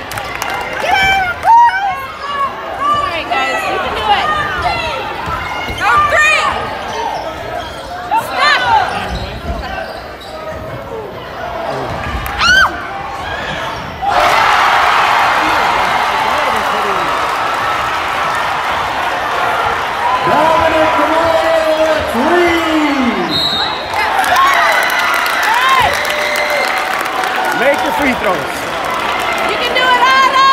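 Basketball game on a hardwood gym court: sneakers squeaking and the ball bouncing, with shouts from the spectators. About halfway through the crowd noise jumps louder and stays steady.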